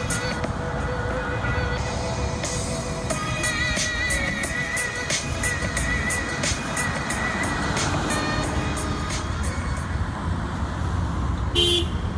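Background music with a steady beat and a wavering melody.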